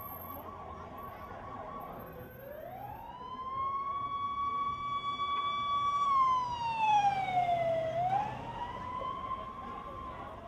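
Emergency vehicle siren wailing over a low traffic rumble. It holds a high tone, dips and climbs back about two seconds in, holds again, then sweeps slowly down and climbs once more near the end. It is loudest as it falls.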